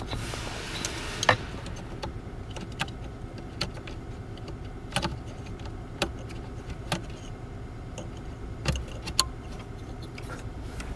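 Plastic wiring-harness connectors and wires being handled and fitted at an accelerator pedal position sensor: scattered sharp clicks and light rattles, the loudest about a second in, over a low steady hum.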